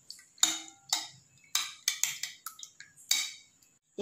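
Steel spoon beating raw eggs in a bowl, knocking against the bowl's side in about seven irregular clinks.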